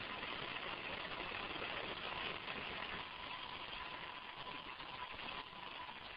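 Faint steady hiss with a thin, steady high tone running through it, a little louder in the first half: the low background noise of camcorder footage of a house fire.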